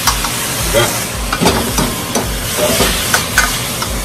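Shrimp and green onion sizzling in a wok over a high gas flame, with a steady hiss. A metal ladle scrapes and knocks irregularly against the wok as the food is stirred and tossed.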